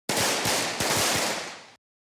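Sound effect of a burst of rapid crackling pops, like a string of firecrackers going off. It starts abruptly and dies away over about a second and a half, standing for the bitten ice-cream bar bursting.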